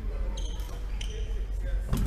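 Badminton rally in a large hall: court shoes squeak twice on the wooden floor, short and high-pitched, and a racket hits the shuttlecock with a sharp crack just before the end. A steady low hum runs underneath.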